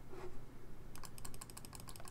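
Rapid clicking on a computer keyboard, about a dozen quick clicks starting halfway through, stepping a game record forward move by move.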